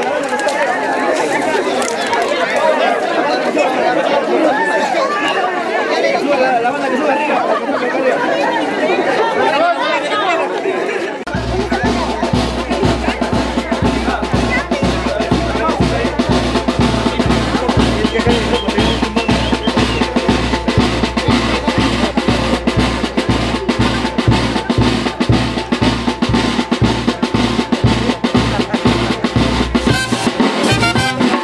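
Crowd chatter in the street. About eleven seconds in, a brass band starts up: a bass drum and a snare drum beat a steady, fast rhythm under brass and saxophones.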